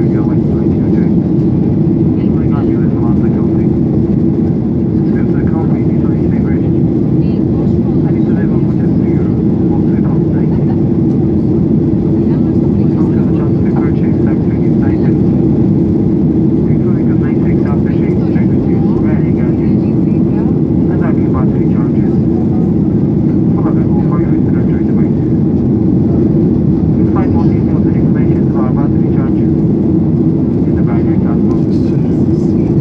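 Steady, loud cabin noise inside a Ryanair Boeing 737 climbing after take-off: jet engines and rushing air make a constant roar with a steady hum, and passengers talk faintly underneath.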